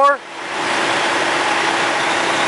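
Tractor-trailer idling on the scale with a faint steady hum under an even rushing hiss that swells up about half a second in and then holds steady.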